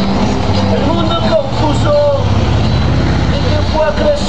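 Low engine rumble of a heavy vehicle passing, over acoustic guitar playing, dropping away just before the end.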